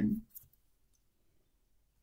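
A woman's spoken word ends, a single faint click follows, then near silence.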